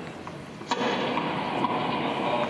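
Soundtrack of a film clip playing over theatre loudspeakers: a steady noisy bed of sound with a sudden hit about two-thirds of a second in.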